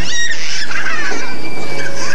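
A short, shrill squeal at the start, then further high gliding cries from children on a spinning kiddie tub ride, over a steady low hum and general crowd noise.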